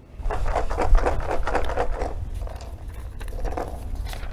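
Numbered pills rattling and clattering as the post-position draw bottle is shaken and handled, densest for about the first two seconds, then lighter handling and paper rustling.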